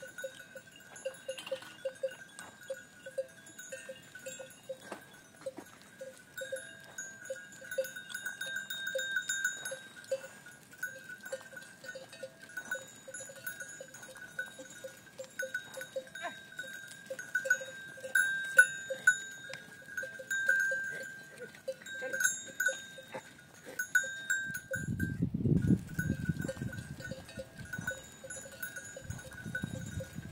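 Bells on a grazing herd of goats clinking and ringing on and on as the animals move. A low rumble comes in near the end.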